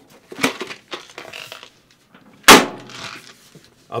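Handling of a PC case: a cardboard box is pulled out from inside with small rustles and knocks. About two and a half seconds in comes a single loud knock with a short ringing tail as the case's hinged side door swings shut.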